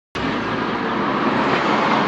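Steady outdoor street-traffic noise, cutting in abruptly just after the start.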